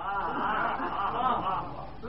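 Many audience voices murmuring together, well below the level of the lecturer's voice, in a steady overlapping mass with light chuckle-like sounds.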